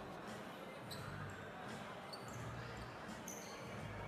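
A basketball being dribbled on a hardwood indoor court, with a few short high squeaks, over a low, steady murmur from the crowd in the hall.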